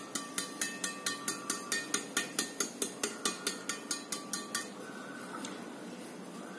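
Badminton racquet string bed tapped repeatedly against the base of the palm: a quick run of sharp pings, about five a second, each with a short ring, stopping a little over four and a half seconds in. The taps work up the string bed from the stem to find the sweet spot by its sound.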